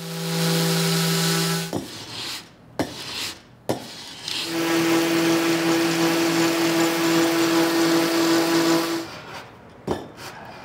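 Festool electric sander running with a steady hum against the edge of a solid walnut tabletop, rounding over a corner. It runs briefly at the start, stops, and after a couple of knocks runs again for about four and a half seconds before cutting off near the end.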